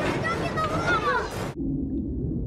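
Film soundtrack: a person's voice until about a second and a half in, over a steady low rumble, with a short held low tone near the end.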